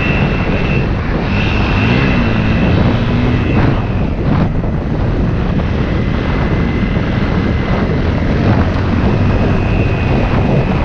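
Dirt bike engine running at riding speed along a trail, heard from a helmet-mounted camera. The engine note dips and climbs again about two to three seconds in.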